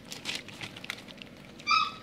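Goldendoodle puppies eating soft puppy food from a foil pan, with small scattered clicks. Near the end one puppy gives a short, high-pitched whine, the loudest sound here.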